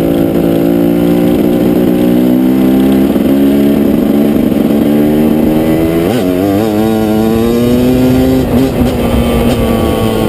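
KTM EXC two-stroke dirt bike engine running under throttle while riding, its pitch climbing slowly for about eight seconds. The pitch wobbles briefly about six seconds in, then eases off a little and holds steady near the end.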